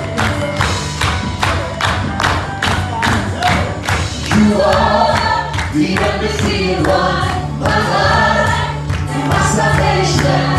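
Live gospel worship music: a band plays with a steady driving beat while a lead singer and choir sing, the voices coming up strongly about four seconds in.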